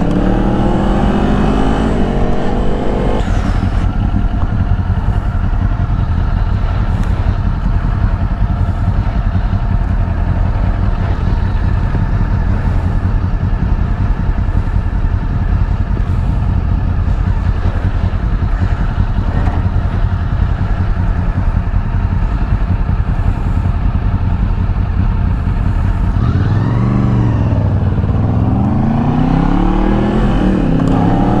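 Kawasaki Z400 parallel-twin motorcycle engine heard from the rider's seat, revving up through the first few seconds, then running steadily. Near the end the revs drop and climb again as the bike slows and pulls away.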